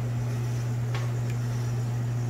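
A steady low hum, with one faint click about a second in.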